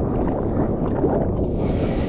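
Broken whitewater rushing and churning around a surfboard, heard at the water surface as a loud, low, crackling wash. A brief higher fizzing hiss near the end.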